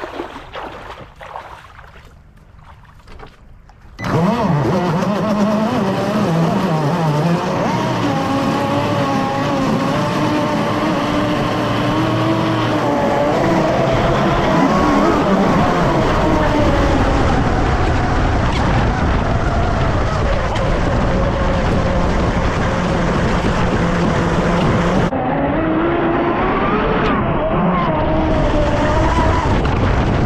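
Proboat Blackjack 42 RC boat's brushless motor and CNC three-blade prop whining at speed, the pitch wavering up and down with throttle and waves, over the rush of water and wind on the hull-mounted camera. For about the first four seconds only quiet water is heard, then the motor comes on suddenly.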